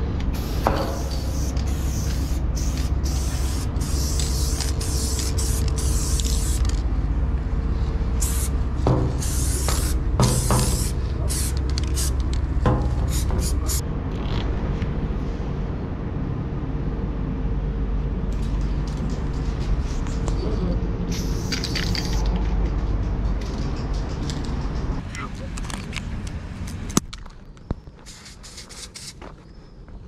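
Aerosol spray paint can hissing in many short bursts, a run of them in the first several seconds and more scattered later, over a steady low rumble.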